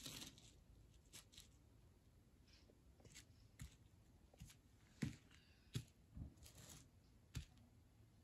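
Faint handling noise: plastic toy horse figures being moved and set down on a gritty mat, a scatter of small taps and scuffs, about ten in all.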